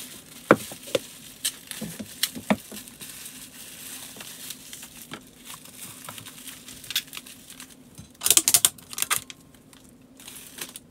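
Clear plastic packing being crinkled and handled by hand as a small item is wrapped, with scattered light taps and knocks on a countertop. Near the end comes a louder burst of crinkling about a second long, over a faint steady hum.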